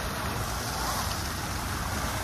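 Plaza water fountain running: a tall jet falling and splashing into the pool, a steady rushing of water.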